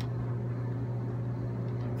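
A steady low hum with no other distinct sound.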